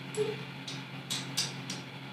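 A handful of faint, sharp clicks, about five spread over two seconds, over a low steady room hum.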